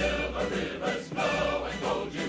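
Male chorus singing with orchestral accompaniment.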